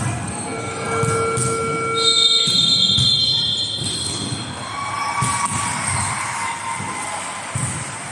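Volleyball rally on an indoor court: long, high squeaks of players' shoes on the sports floor, with a few sharp knocks of the ball being hit, in a reverberant hall.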